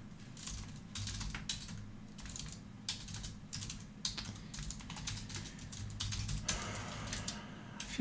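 Typing on a computer keyboard: a quick, irregular run of keystroke clicks over a low steady hum.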